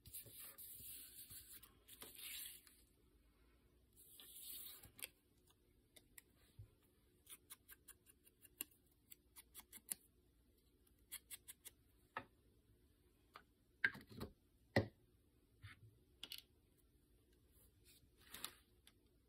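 Paper being rubbed and handled while its edges are inked with a foam ink blending tool: three short swishing rubs in the first few seconds, then a scatter of light ticks and taps, with two sharper knocks near the end.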